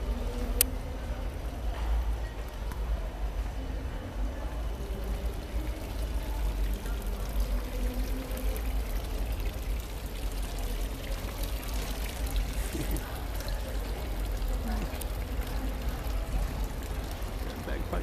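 Water pouring from a street fountain's spouts into its basin, a steady splashing, with people's voices murmuring and low wind or handling rumble on the microphone.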